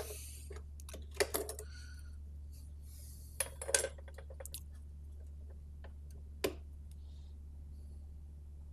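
Metal valve shields and glass valves being handled and pulled from their sockets on a Mesa/Boogie amplifier chassis: a few small metallic clicks and clinks, grouped about a second in and near four seconds, with a single sharper click at about six and a half seconds. A steady low hum runs underneath.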